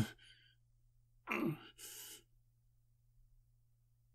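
A man's close voiced sighs: a short one at the start, then another about a second and a half in that trails off into a breathy exhale.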